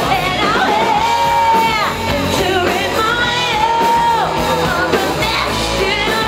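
Live cover band playing, amplified and loud, with a vocalist holding two long sung notes that each fall away at the end, over the band's backing.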